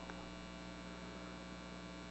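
Steady electrical mains hum, an unchanging low tone with a stack of evenly spaced overtones.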